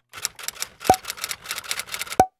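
Typewriter sound effect: a rapid run of key clacks, about six or seven a second, with one much louder strike about a second in.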